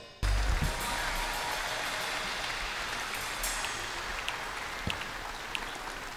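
Large concert-hall audience applauding after a song. The applause starts suddenly just after the beginning and slowly dies down, with a few individual claps standing out.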